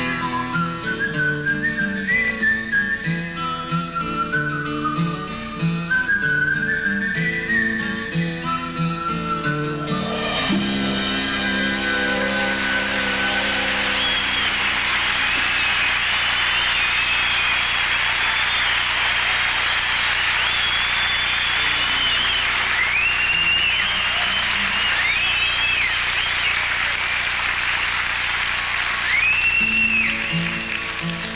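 A band with acoustic guitar plays the last instrumental bars of a folk song, ending on a held chord about a third of the way in. Then a large audience applauds with loud whistling, and an acoustic guitar starts again near the end.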